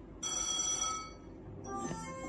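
Merkur Fruitinator Plus slot machine sounding a bright, bell-like ringing chime as its reels land a winning line of four melons. Its win melody starts near the end.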